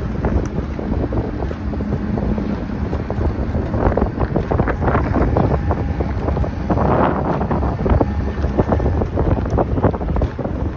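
Wind buffeting the microphone on a moving boat, over the rush of water, with louder surges of splashing about four to five seconds in and again around seven seconds.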